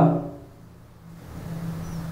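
A low steady hum that grows louder about a second in.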